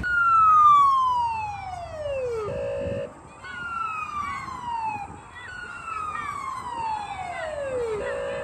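An electronic siren sounds three long sweeps. Each jumps high and slides steadily down in pitch. Between the first two sweeps and after the last there is a short steady tone.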